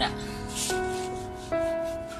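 A cloth rubbing the rubber sidewall of a car tyre in repeated strokes, wiping off excess motor oil just spread on as a shine coat. Background music with slow, held notes that change about every second.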